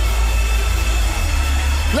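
Church band music in a pause between chanted calls: a heavy, steady bass with held keyboard notes above it.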